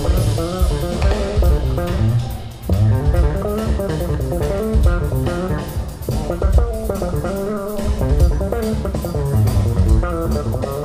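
Live blues-rock band playing: electric guitar over bass guitar and a drum kit, with a brief drop in level about two and a half seconds in.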